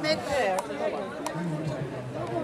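Several people talking at once, close by, with a few sharp clicks among the voices.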